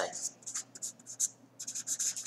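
A pen writing a word by hand on graph paper: a run of short scratchy strokes, coming thicker in the second half.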